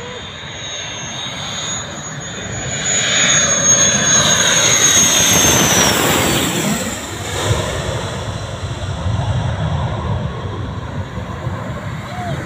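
F-16 fighter jet flying low overhead. Its roar builds to a peak, then a high whine drops sharply in pitch as the jet passes, and the roar fades away.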